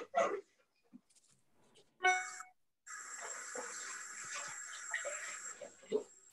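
Background noise from participants' open microphones on a video call. A short pitched sound comes about two seconds in, then a steady hiss with a thin high whine for about two and a half seconds.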